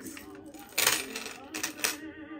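Pearl necklace with sterling silver rings clinking and rattling as it is handled and laid down on a mirrored display: two short clusters of clicks, the louder just under a second in and a smaller one near the end.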